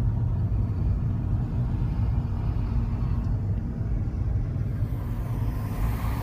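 A car driving, heard from inside the cabin: a steady low rumble of engine and road noise, with a faint hiss rising near the end.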